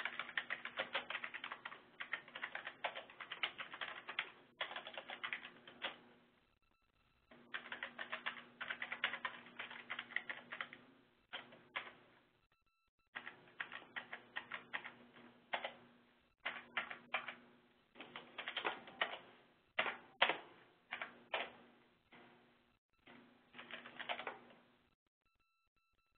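Computer keyboard being typed on in bursts of quick keystrokes separated by short pauses, with a faint low hum beneath the clicking.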